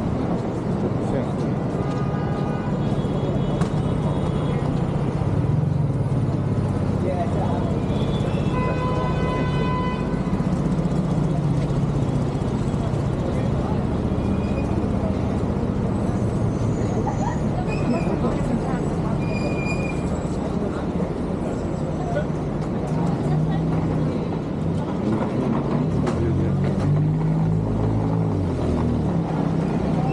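City street ambience: steady traffic running along the road, with the indistinct voices of passers-by and a few brief high-pitched tones scattered through.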